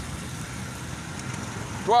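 Motorcycle engine running as it rides along a street, a steady low rumble under road and wind noise.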